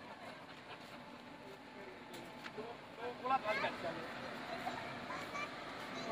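Faint voices of people talking in the background over steady outdoor hum, with a brief louder burst of speech a little past the middle.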